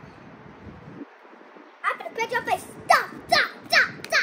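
A young girl's high-pitched playful vocalizing without words: a run of short, loud, falling calls about two a second, starting about two seconds in.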